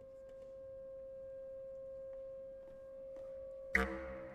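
Contemporary ensemble music: a single pitched tone held steadily and quietly, then a sudden loud attack of several pitches near the end that rings on.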